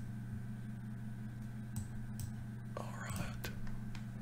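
Faint computer mouse clicks, a few scattered sharp ticks, over a steady low electrical hum, with a brief soft breathy noise about three quarters of the way through.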